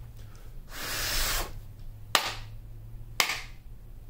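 A tarot deck being shuffled by hand: a short rustle of cards sliding about a second in, then two sharp card snaps about a second apart.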